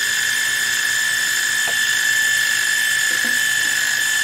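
Milling machine spindle turning a face-milling cutter across a cast compressor connecting rod piece, a steady high whine.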